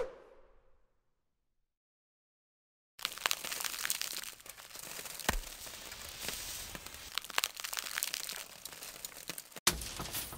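Sound-effect track: a short hit at the start that dies away within a second, then after a two-second silence a dense crackling, crunching noise with many sharp clicks for about six and a half seconds. It cuts out for an instant near the end and starts again.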